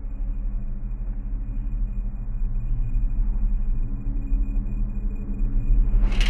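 A low, steady droning rumble from a horror film's soundtrack, swelling slowly in loudness as suspense builds.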